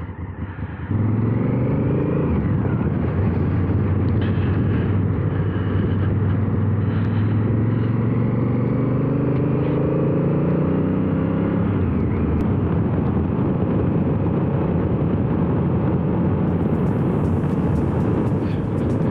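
Honda CRF1000L Africa Twin's parallel-twin engine pulling away from a stop about a second in and accelerating through the gears. The pitch climbs briefly, then climbs in one long sweep until about twelve seconds in. After that it runs steadily under wind and road noise.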